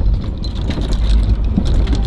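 Open-sided cart driving over rough ground: a steady low rumble of the vehicle and its tyres, with wind on the microphone and a few light clicks and rattles.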